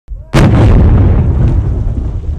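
Explosive ordnance blown up in the ground by deminers: one sudden loud blast about a third of a second in, followed by a long low rumble that slowly fades.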